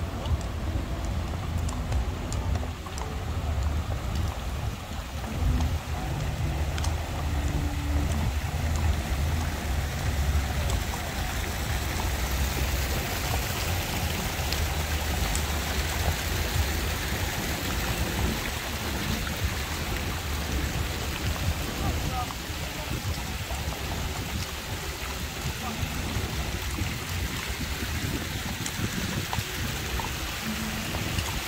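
Fountain and water channel running steadily, a continuous splashing hiss, with faint scattered clicks over it.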